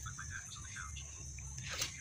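Faint, scattered rustling of crumbled styrofoam being poured and handled in a small plastic container, over a steady high-pitched hiss.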